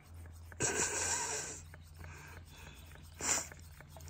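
A person's heavy, breathy exhale lasting about a second, starting about half a second in, and a short sharp breath or sniff just after three seconds, with a few faint light clicks between.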